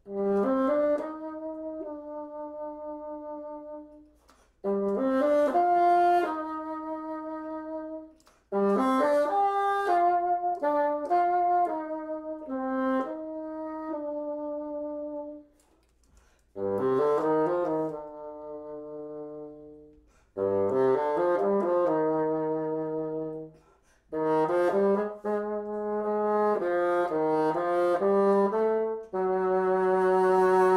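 Solo bassoon playing a series of short phrases split by brief breaths: each opens with a quick run of notes and settles on a held note that fades.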